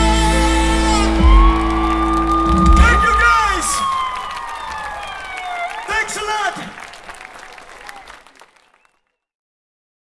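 A live band's closing chord, held loud with bass, breaks off about three seconds in. Under it a long held note slides slowly downward, with short shouts over it, and the sound fades out to silence just before the end.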